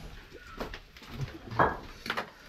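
A bird calling: a short call about half a second in and a louder one near the end, over faint footsteps on a dirt path.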